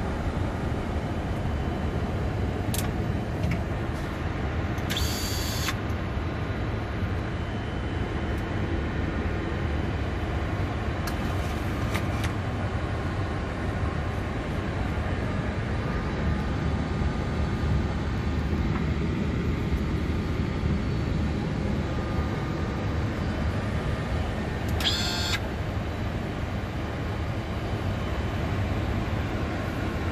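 Steady rumble and hiss inside the cockpit of a Boeing 747-400 freighter taxiing on the ground after landing, with a few brief high-pitched hissy bursts about five, eleven and twenty-five seconds in.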